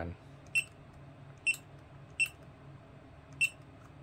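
Touchscreen HMI panel giving a short key-press beep each time its on-screen button is tapped, four quick beeps at uneven intervals.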